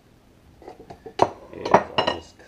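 A metal knife and a ceramic bowl clinking and knocking together, a short run of sharp knocks with the loudest near the end.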